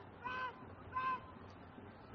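Two short honking horn blasts from the stadium stands, about two-thirds of a second apart, over low crowd noise.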